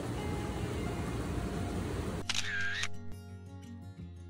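Hot tub jets churning the water, a steady rush of bubbles over background music. It cuts off suddenly about two seconds in, and a short camera-shutter sound effect follows.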